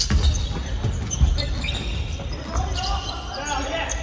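Basketball play on a hardwood court in a large, echoing gym: the ball and feet thud repeatedly on the floor, with short sneaker squeaks. Players shout out near the end.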